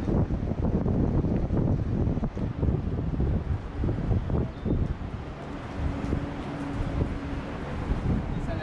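Wind buffeting the microphone: a gusting low rumble that rises and falls throughout, with a faint steady hum for a moment after the middle.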